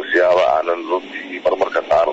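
Speech only: a news narrator speaking Somali.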